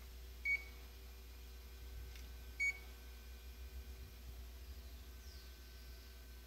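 Ricoh MP C copier's touch panel giving two short high key beeps, about two seconds apart, as its screen is pressed, over a steady low hum.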